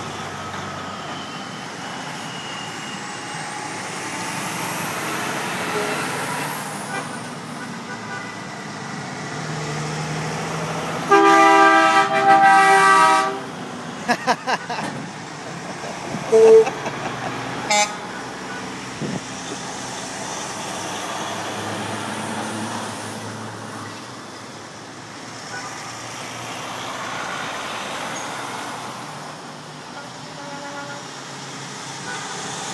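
Heavy diesel trucks rolling past in a convoy, their engines running steadily. About eleven seconds in, a truck air horn gives a loud blast of about two seconds, followed by a few short toots.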